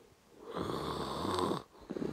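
A man snoring in his sleep: one long snore that starts about half a second in and stops after about a second.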